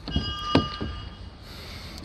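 Car rear door being opened: a sharp click of the handle and latch about half a second in, with a faint high ringing tone lasting about a second and a few soft knocks.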